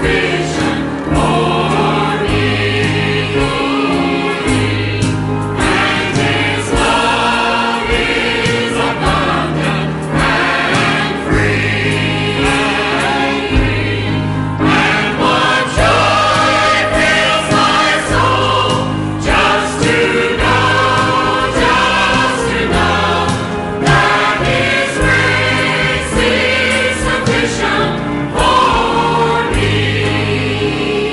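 Church choir singing a hymn, with sustained low notes beneath that change every second or two.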